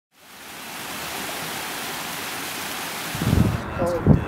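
A steady, even hiss fades in over the first second, holds, and stops abruptly about three and a half seconds in. A low rumble comes in just before the hiss ends, and a voice starts near the end.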